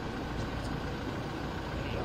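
Steady low background rumble with a light hiss, even throughout, with no distinct events: ambient noise at the press gaggle, of an engine-like kind.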